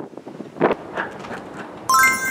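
A few soft thuds of feet running on an inflatable gymnastics air track, over wind on the microphone; just before the end a bright, ringing chime comes in.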